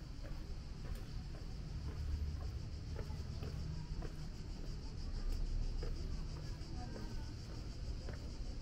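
Outdoor walking ambience: a steady low rumble under a constant high, pulsing insect chorus, with faint scattered clicks of footsteps on cobblestones.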